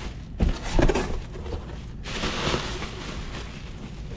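Plastic air-pillow packing crinkling and rustling as it is pulled about inside a cardboard box, with a few sharp crackles in the first second and a longer rustle between about two and three seconds in.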